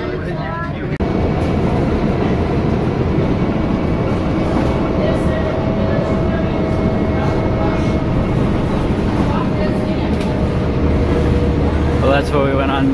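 Steady engine and road noise of a moving bus heard from inside the passenger cabin, getting louder about a second in. Faint passenger voices underneath.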